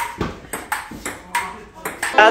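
Table tennis rally: a plastic ball clicking sharply off paddles and the tabletop, about five hits in two seconds.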